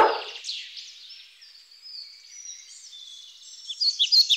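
A dog's bark cuts off just at the start, leaving faint birdsong of high, quick chirps and whistles.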